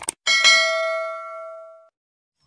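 A quick double mouse click, then a bright bell ding that rings out and fades over about a second and a half. It is the notification-bell sound effect of a subscribe-button animation, marking the bell being clicked.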